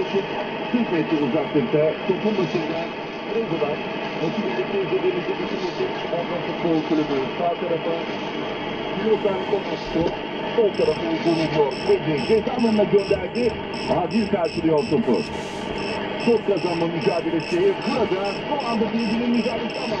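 A shortwave broadcast voice received on a home-built single-tube 6J1 SDR receiver, played through the computer's sound output: narrow-band, muffled speech over steady hiss. From about halfway, faint regular clicks about twice a second come in as the bench power supply's knob is turned down toward 3.7 V.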